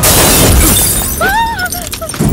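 Glass shattering in a sudden loud crash, the high, bright spray of breaking fragments dying away over about a second, followed by a man's short yell a little past the middle.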